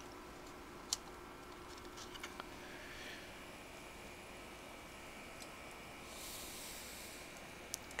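Faint handling of electrical wiring and a lamp socket over quiet room tone: a sharp click about a second in, a few light ticks, and a soft rustle near the end.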